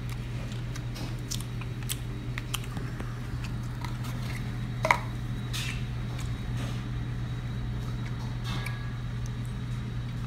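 Close-up chewing, with small clicks and scrapes of a plastic fork on a foam plate and one sharper click about five seconds in, over a steady low hum.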